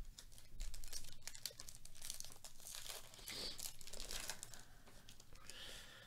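Foil wrapper of a 2022 Bowman Chrome baseball card pack being torn open and crinkled by hand, an irregular run of crackles and rustles lasting several seconds.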